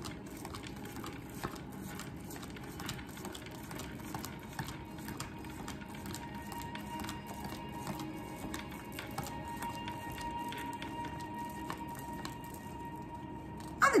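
Soft background music of long held tones, with many small clicks and flicks of a deck of oracle cards being handled and shuffled.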